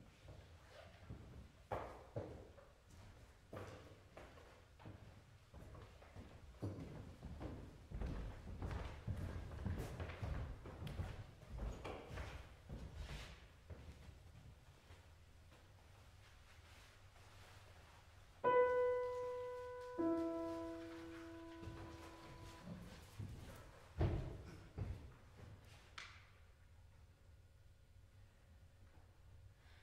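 Footsteps and shuffling on a wooden stage floor as performers take their places, then two single grand piano notes struck about a second and a half apart, the second lower, each left to ring and fade: starting pitches given to the a cappella singers. A thump follows a few seconds later.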